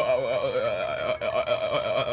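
A high-pitched voice wailing a rapid, wavering 'oh-oh-oh' without a break.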